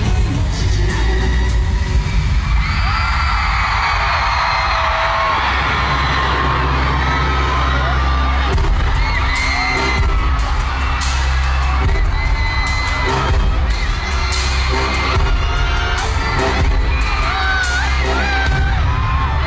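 Live pop music played loud through an arena sound system, with a heavy, steady bass beat. High-pitched crowd screaming and cheering rises over it throughout.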